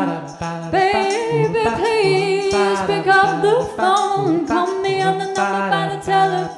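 Layered a cappella vocals built up with a live looper: a low, repeating sung bass part under stacked harmonies and a lead voice, with short percussive clicks running through it.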